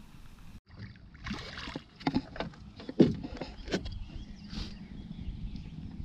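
Scattered knocks and clatter against a small rowboat's hull, with brief splashy swishes, as a small pike is brought to the boat's side and landed by hand. The loudest is one sharp knock about three seconds in.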